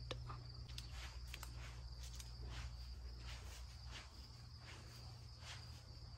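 Faint outdoor garden ambience: a steady high-pitched insect trill, with a low rumble and soft scattered ticks.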